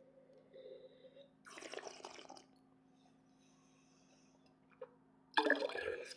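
A mouthful of red wine sipped and slurped, air drawn through the wine in the mouth to taste it, in two short soft bouts within the first two and a half seconds. A louder breath comes near the end.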